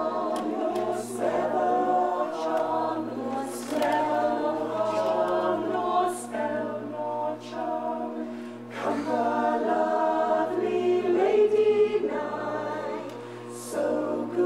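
A group of voices singing together in sustained, choir-like phrases, the notes shifting every second or so with brief breaks between phrases.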